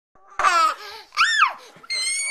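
A toddler laughing in three short, very high-pitched squeals, each rising and then falling in pitch.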